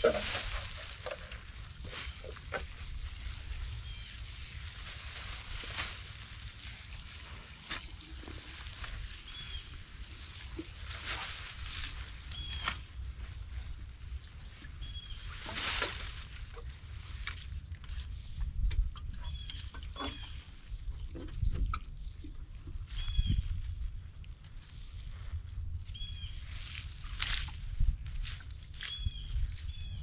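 Dry leaves and compost rustling and crunching as they are forked and tossed onto a new compost pile, while water from a watering can pours onto them. Short high chirps recur every few seconds over a steady low rumble.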